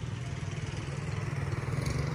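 A small vehicle engine running steadily in street traffic, a low even hum that grows a little louder.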